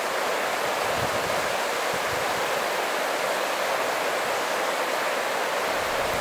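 Mountain river rushing over rocks where the current pours into a pool: a steady, even rush of water.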